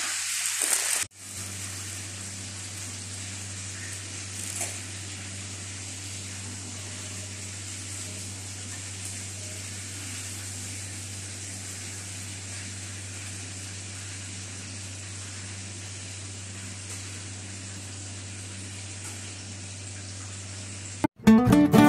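Steady hiss with a low, even hum, like an appliance or fan running in the background, after a sudden change about a second in; one small brief sound about four and a half seconds in.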